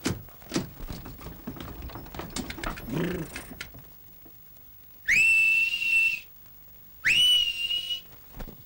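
Scattered clattering and knocks, then two loud finger whistles. Each rises quickly to a high note and holds it for about a second. It is a calling whistle sent up from the street to someone in a house.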